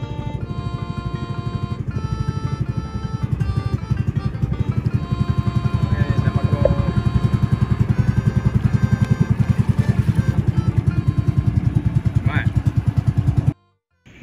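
Boat engine running with a rapid, even pulsing that grows louder, under background music; it cuts off suddenly near the end.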